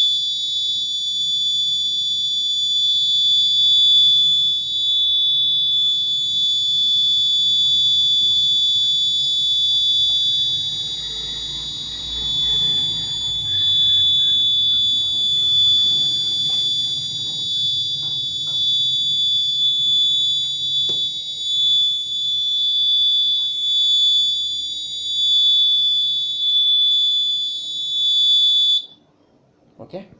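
Piezo buzzer on an embedded safety-alarm board sounding one steady, shrill, high-pitched tone, the alert raised by the board's earthquake (vibration) sensor; it cuts off abruptly about a second before the end.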